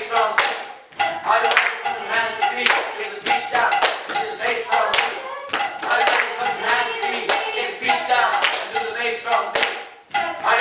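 Repeated hand clapping with a voice singing into a microphone, in a small room.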